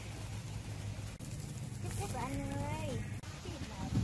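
Quiet outdoor background with a low steady hum, and a faint distant voice speaking briefly about two seconds in.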